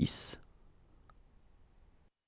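The hissing 's' ending of a spoken number word, then near silence with one faint click about a second in.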